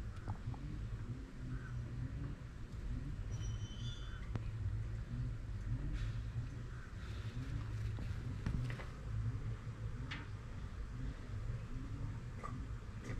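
Honeybees buzzing around an open hive box of honey frames: a steady low hum with single bees' buzzes passing now and then, and a few light clicks.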